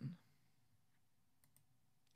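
Near silence: room tone, with the end of a spoken word at the very start and a few faint clicks about one and a half seconds in.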